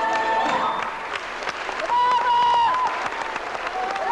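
A choir's final sustained chord ends about half a second in, and audience applause follows. About two seconds in, a loud, high held call with a falling end rings out over the clapping.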